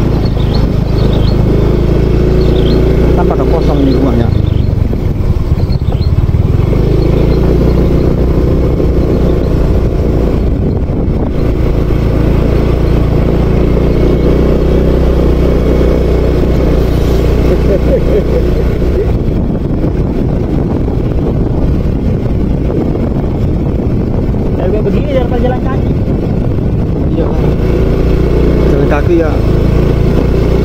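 Motorcycle engine running steadily while riding along a dirt track, at an even, loud level throughout, with faint voices now and then.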